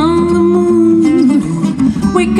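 Live acoustic band music: a woman singing over acoustic guitar and acoustic bass guitar, with one long held note in the first second.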